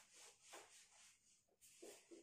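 Handheld eraser wiping a whiteboard: several faint, short rubbing strokes, back and forth.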